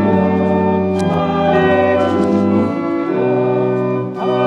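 Church organ playing a hymn tune in sustained chords that change about every second.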